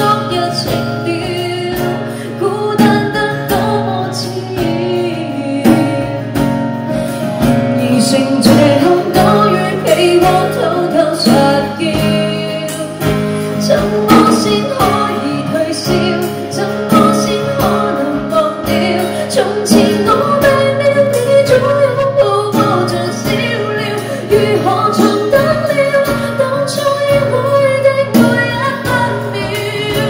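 A live band performance of a Cantopop song: a woman singing while strumming an acoustic guitar, with a drum kit keeping the beat.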